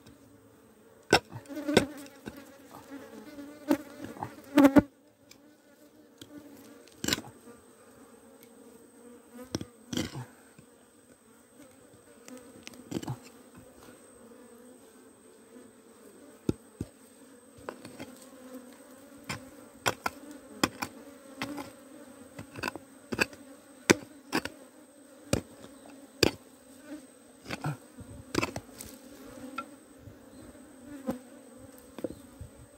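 Honeybees buzzing steadily around their exposed nest, with irregular sharp knocks of a metal blade chopping and prying into the earth around the nest, loudest in a flurry in the first few seconds.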